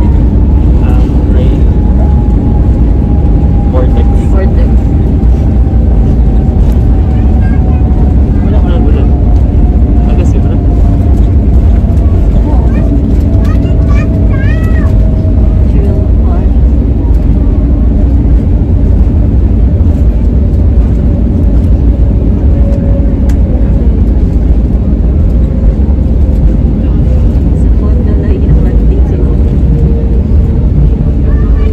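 Airliner cabin noise just after landing: a loud, steady low rumble with a thin engine whine that falls slowly in pitch throughout, as the jet engines wind down while the aircraft rolls out.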